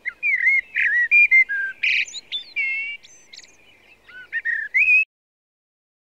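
Birds singing: a busy run of short whistled notes and chirps, some sliding up or down in pitch, that cuts off suddenly about five seconds in.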